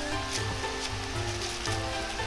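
Background music with held notes and a low pulsing bass. Under it, faint crinkling of plastic wrap being gathered around a ball of dough.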